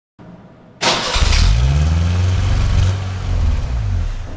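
Exhaust of a 1986 Ford Ranger's carbureted 2.0 L four-cylinder engine, coming in suddenly about a second in, rising briefly in pitch, then running steadily and easing off near the end.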